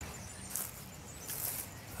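Quiet outdoor background with two brief soft rustles, about half a second and about a second and a half in.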